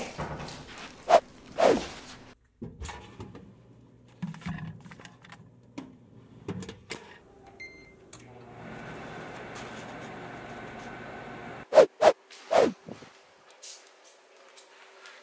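Knocks and clicks of a microwave oven being loaded and shut, then a short keypad beep, then the microwave oven running with a steady hum for about three and a half seconds. Its hum stops abruptly, and three loud thumps follow near the end.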